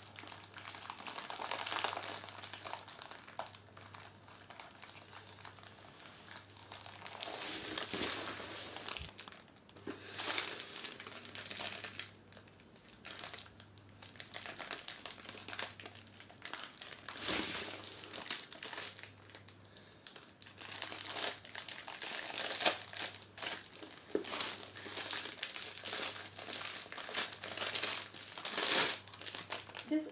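Crinkly plastic sweet wrapper being worked open by hand, rustling in irregular bursts.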